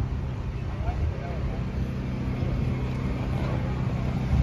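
A steady low motor-vehicle engine rumble, with people talking faintly in the background.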